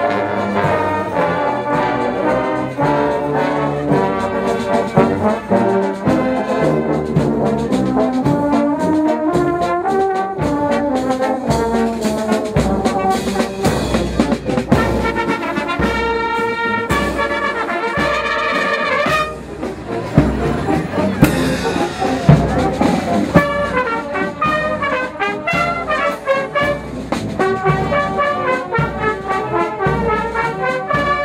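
Salvation Army marching brass band (cornets, trombones, euphoniums and tubas) playing a tune as it marches, the sound dipping briefly about two-thirds of the way through.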